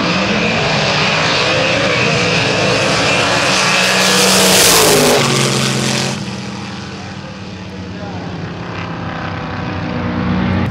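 Two gasser drag cars launching at full throttle, a red 1950s Chevrolet and a black roadster, their engines at their loudest about four to five seconds in. The sound drops suddenly near six seconds and fades as the cars run away down the quarter-mile, rising through the gears.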